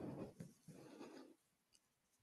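Near silence, with two faint, soft swells of noise, each about half a second long.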